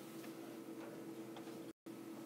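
Faint steady electrical hum in the recording, with a few faint ticks. The audio drops out completely for a split second near the end.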